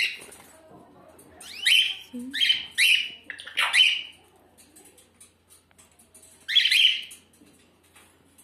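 Caged bird chirping: a quick run of four short harsh chirps from about a second and a half in, then one more a few seconds later.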